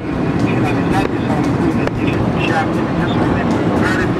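Steady road and engine rumble heard inside a moving car's cabin, with faint voices now and then.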